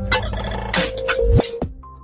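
Electronic logo-intro sting: held synth tones with whooshes and a few sharp hits, then settling on a single held note that grows quieter near the end.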